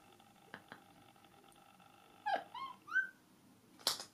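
A woman's stifled laughter behind her hand: a few high, squeaky laughs that rise and fall about halfway through, then a sharp burst of breath near the end.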